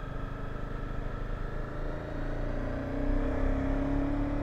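Honda CBR250 motorcycle engine running at low speed, its note rising slightly and getting a little louder in the last two seconds as it pulls along.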